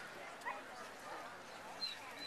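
A dog giving two short barks, about half a second in and again near the end, over background talk.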